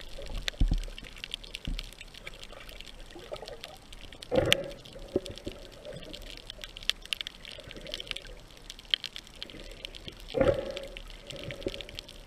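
Underwater sound on a night reef dive: a steady crackle of fine clicks, with a louder rush of moving water about four seconds in and again about ten seconds in.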